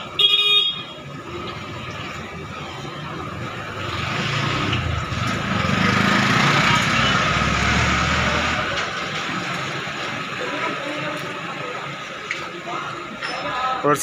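Hot oil sizzling in a large iron kadhai as batter-dipped bread slices deep-fry. A short horn toot comes just after the start, and a passing vehicle makes the noise swell for a few seconds in the middle.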